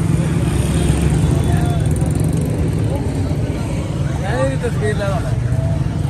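Steady low rumble of road traffic next to the market, with voices speaking in the background about four seconds in.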